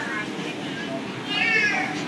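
A man's voice speaking Thai, delivering a sermon, with a brief high-pitched sound that rises and falls about one and a half seconds in.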